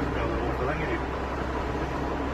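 Steady road and engine noise heard from inside a moving car in traffic, with a constant low hum. A voice speaks indistinctly during the first second.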